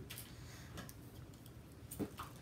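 Quiet room tone with a low hum and a few faint, scattered ticks, the last slightly louder at the very end.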